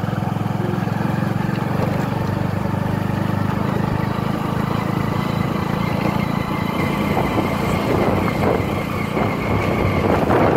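Motorcycle engine running steadily while riding along a bumpy dirt track, with jolting and wind noise growing over the last few seconds.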